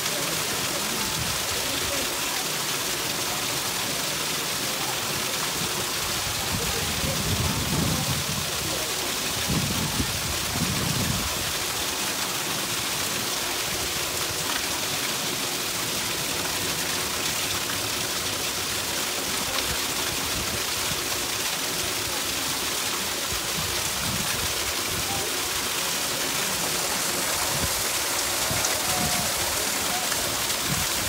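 Water rushing through a canal lock's wooden gates, a steady, even hiss.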